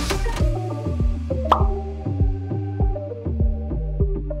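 Background music with steady low bass notes and a regular beat, with one short pop about a second and a half in.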